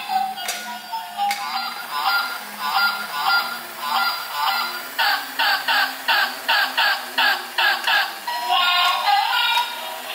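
Walking toy swan's built-in sound chip playing a tinny electronic tune, which breaks halfway through into a run of quick goose-like honks, about three a second, before the tune returns near the end.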